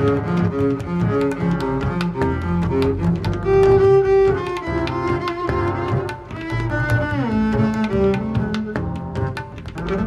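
Instrumental jazz music led by double bass: a fast run of notes, a loud held note about four seconds in, and a falling glide about seven seconds in.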